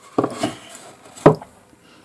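A wooden painting board being tipped and shifted on a tabletop: a short scuff against the wood, then one sharp knock just over a second in.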